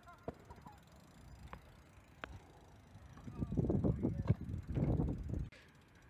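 BMX bike rolling over concrete: a few light clicks, then a rumble of tyres on the ramp for about two seconds past the middle.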